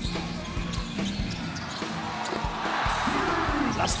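Basketball dribbled on a hardwood court: a series of low, irregularly spaced bounces, with arena music underneath.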